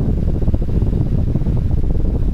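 Steady wind rush on the microphone of a motorcycle moving at cruising speed, a low, even rumble. The 2001 Yamaha FZ1's inline-four with its stock muffler runs quietly beneath it.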